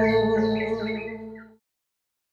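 Javanese gamelan music with long ringing gong and metallophone tones, fading out and ending in silence about a second and a half in.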